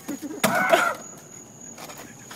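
A sharp knock about half a second in, followed at once by a short single cry from a man. A faint steady high-pitched whine runs underneath.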